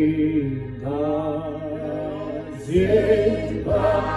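Voices singing a slow, chant-like hymn in long held notes that glide between pitches, phrase after phrase, over a steady low hum.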